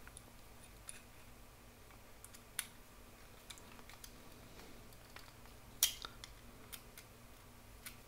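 Faint scattered clicks and ticks of a hex key working the set screw of a 3D-printed plastic timing-belt pulley on a metal axle. Two sharper clicks stand out, one just after two and a half seconds in and the loudest near six seconds.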